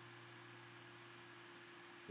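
Near silence: faint room tone with a low steady hum and hiss.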